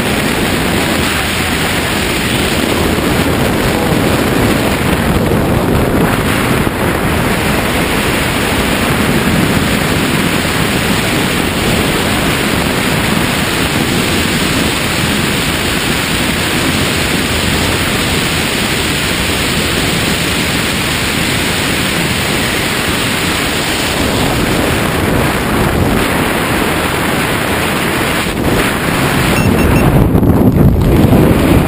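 Steady wind rushing over a wrist-mounted camera's microphone during a tandem parachute descent under an open canopy.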